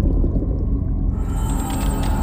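Film score: a loud, deep rumbling drone, joined about a second in by a hiss that reaches high up.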